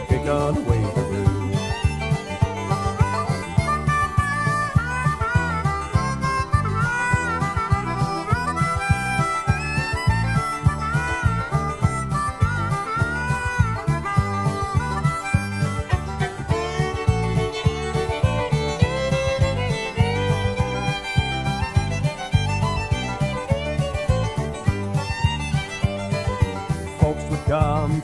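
Instrumental break of a country song: a lead melody with bending notes over guitar, bass and a steady beat.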